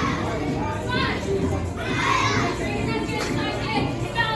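Several children's voices talking and calling out over one another in a large room.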